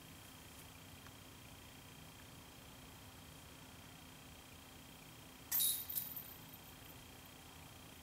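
Faint steady background hiss, broken about five and a half seconds in by a brief, bright metallic rattle of a disc golf basket's hanging chains that dies away within a second.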